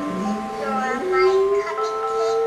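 A dog howling along to a tune of steady held electronic notes: the howl starts low, rises in pitch about a second in and is held.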